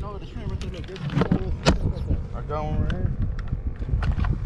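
Wind rumbling on the microphone under indistinct voices, with a few sharp clicks and one louder knock about one and a half seconds in.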